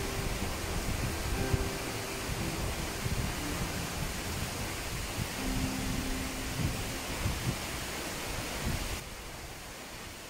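Steady roar of a high waterfall, water plunging down a rock face into its pool, with some wind buffeting the microphone. It drops slightly in level about nine seconds in.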